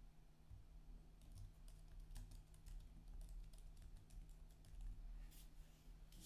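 Near silence: faint, irregular light clicks, like keyboard typing, over a steady low electrical hum.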